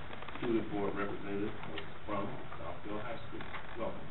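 Indistinct voices murmuring in a room, with no clear words.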